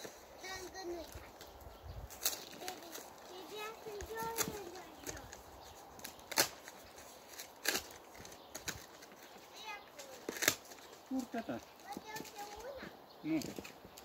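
Faint, distant voices with several sharp clicks or knocks scattered through, the loudest about six and a half and ten and a half seconds in.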